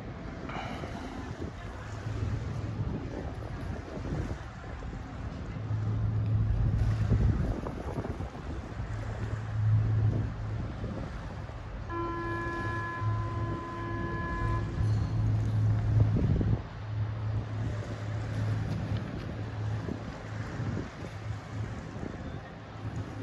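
Wind buffeting the phone's microphone by the river, with a low steady hum underneath that swells and fades. About twelve seconds in, a steady horn-like tone with several pitches sounds for nearly three seconds, then cuts off.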